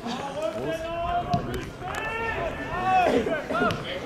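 Men's voices shouting calls across a football pitch while play goes on, in rising and falling arcs, loudest in the second half, with a few short knocks among them.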